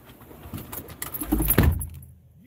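Rustling and clicking handling noises with a dull thump about one and a half seconds in, as a man climbs into the car through the open door.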